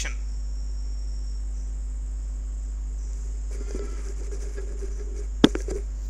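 Steady low background hum with a faint high-pitched whine above it, and a single sharp click about five and a half seconds in.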